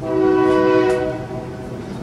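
Train horn sounding one steady blast of several tones together, about a second and a half long, loudest at first and then fading away.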